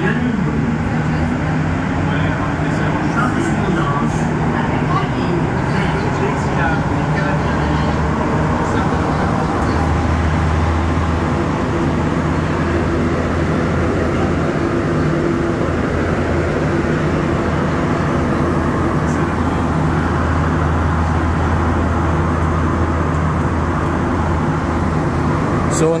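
Montreal Metro rubber-tyred train heard from inside the car, pulling out of a station with a rising motor whine over the first few seconds, then running through the tunnel with a steady rumble and hum.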